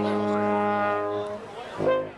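Brass quintet of French horn, tuba, two trumpets and trombone holding a final chord, which cuts off about a second and a half in. A short, loud burst of sound comes near the end.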